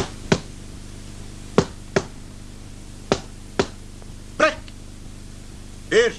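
Boxing-glove punches landing in three quick pairs of sharp slaps, followed in the second half by two short shouted calls in a man's voice as the referee starts a count over a boxer down on the ropes.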